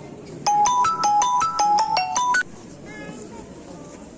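Mobile phone ringtone: a quick electronic melody of about a dozen short, clear notes that is loud and stops abruptly after about two seconds, over a low murmur of voices.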